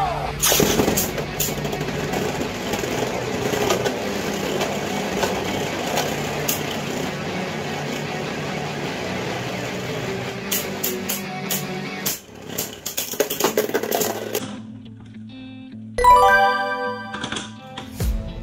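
Two Beyblade spinning tops whirring and scraping in a plastic stadium over background music, with a flurry of sharp clicking clashes a little past the middle. The whirring stops suddenly about two-thirds of the way in, and a short pitched jingle starts near the end.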